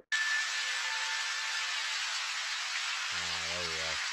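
Nature-ambience sample of a river, flowing water played back with its gain turned up: a steady rushing hiss with no low end.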